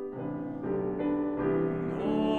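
Piano playing a short interlude of four chords, each struck a little under half a second after the last and left to ring. This is the accompaniment between the baritone's sung phrases in a classical art song.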